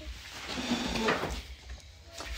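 A brief rustling scrape of hands handling paper stickers on a cardboard disc, from about half a second in to just past a second.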